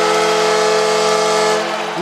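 Arena goal horn blaring a steady multi-tone chord after a home goal, over a cheering crowd; the horn dies away near the end.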